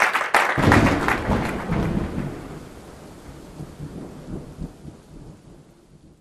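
Outro sound effect: a loud thunder-like rumble that starts about half a second in and fades away over about five seconds, over the tail end of a few claps.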